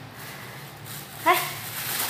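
A single short, loud cry that rises in pitch, a little over a second in.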